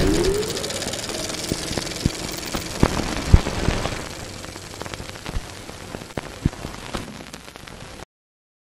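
Sound design of an animated logo intro: a short rising tone at the start, then a dense crackling with scattered sharp clicks and thumps. It fades over the second half and stops abruptly at the end.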